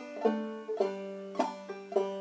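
Five-string banjo played clawhammer style, picking out a melody line slowly, a few single notes a second, each ringing on until the next.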